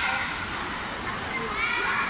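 Hubbub of many children's voices at a busy ice rink, with high-pitched calls near the start and again in the last half-second.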